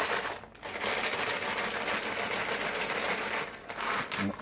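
Crinkly plastic packet rustling as it is shaken and squeezed, with small pieces of dried fruit tipping out into a ceramic bowl. It makes a dense, continuous crackle for about three and a half seconds after a brief pause near the start.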